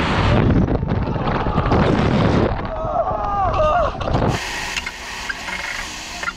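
Heavy wind rush buffeting an action camera's microphone as two riders drop on a giant canyon swing, with a man screaming in the rush about three seconds in. About four seconds in the wind noise cuts off suddenly to a much quieter passage.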